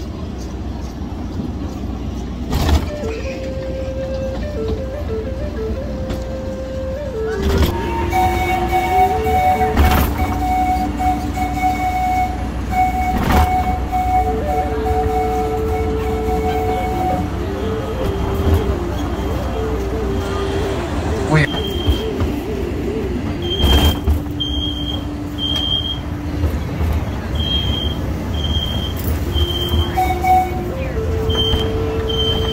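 Mini train running toward its station with a steady low rumble and occasional clunks, while a slow tune of held notes plays. From about two-thirds of the way in, short high beeps repeat.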